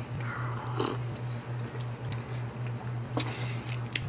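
Quiet mouth sounds of a person sipping and swallowing a hot drink from a paper cup, with a few soft clicks, over a steady low electrical hum.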